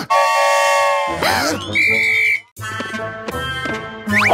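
Cartoon sound effects: a steady steam-whistle tone for about a second, a short gliding vocal squeak, then a high piercing whistle tone. After a brief break, background music.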